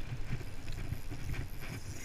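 Spinning reel being wound in on a fishing rod, heard as irregular low knocks and faint clicks over handling noise on a body-worn camera.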